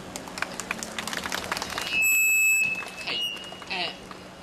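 Handheld microphone being passed from one person to another: scattered clicks and handling knocks, then about halfway through a loud, high-pitched electronic squeal from the microphone and sound system lasting about half a second. A fainter whistle follows shortly after, and a voice starts near the end.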